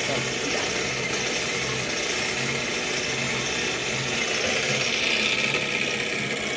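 Sewing machine running steadily, a continuous mechanical sound.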